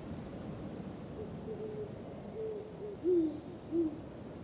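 A series of short, low hooting calls over a steady hiss. The last two, near the end, are louder and fall in pitch.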